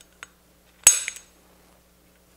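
Spring-loaded automatic center punch with a straight-wall staking tip firing once against a steel AR castle nut: a single sharp metallic snap with a short ringing tail a little under a second in. Each snap drives the nut's metal toward the end plate's staking notch.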